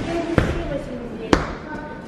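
Two dull thumps about a second apart as a child throws himself onto a leather sofa, with talk in the background.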